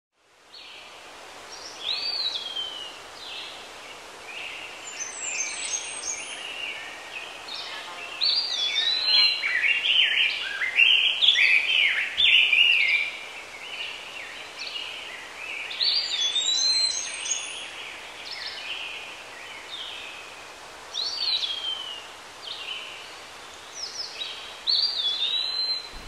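Birds singing: many short chirps and whistled phrases overlap, some of them repeating a slurred falling note. The song is busiest and loudest from about eight to thirteen seconds in.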